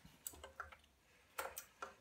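A few faint, small clicks and ticks, the loudest about one and a half seconds in, as hands handle the pot's wires and a soldering iron inside the amplifier chassis.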